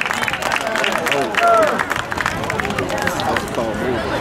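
Several voices calling out and talking over one another, the shouts and chatter of players and onlookers around an outdoor youth football field.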